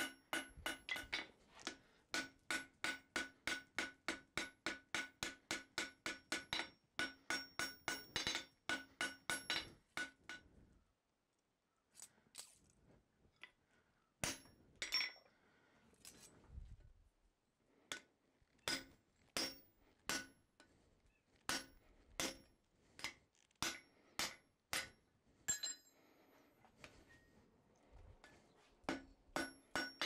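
Hand hammer forging a red-hot steel bar on an anvil, each blow ringing: a fast run of about three blows a second for the first ten seconds, then a short lull with a few scattered knocks, then slower, spaced blows.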